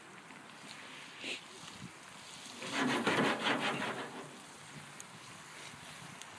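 Open wood fire burning under a grill with a steady hiss, rising to a louder rushing burst for about a second and a half around three seconds in.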